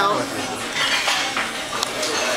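Restaurant background of dishes and cutlery clattering, with a few clinks, one sharp one near the end, over faint chatter.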